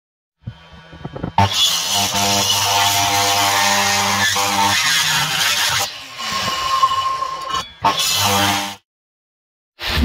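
Electric miter saw running and cutting through a thick block of hardwood. It starts abruptly about a second and a half in and runs steadily for about four seconds. A second, shorter stretch of saw noise follows, and the sound cuts off suddenly shortly before the end.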